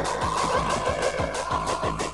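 A 12-inch 45 RPM vinyl record of hardcore techno playing on a turntable: fast kick drums at about four a second, with a warbling held synth sound over them that breaks off just before the end.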